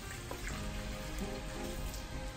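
Tap water running into a plastic tub of raw meat as it is rinsed at a sink, with background music over it.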